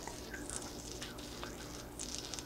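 Faint crackling and sizzling of water boiling on a stainless steel plate heated by small oxyhydrogen (HHO) flames, with a few scattered ticks over a low steady hum.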